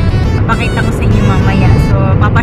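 A woman's voice singing along with music, over the steady low rumble of a moving car's cabin.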